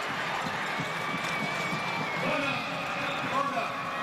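Stadium crowd noise with indistinct voices, and a thin high whistle held for about a second, starting about a second in.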